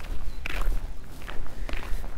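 Footsteps crunching on a gravel path, about two steps a second.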